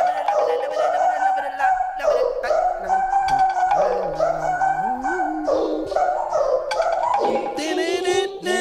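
Intro of an electronic hip-hop backing track played over a PA: a sustained melody that slides in pitch, over a bass line that steps and glides.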